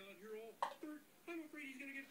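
Faint voices talking, with a single sharp click just over half a second in.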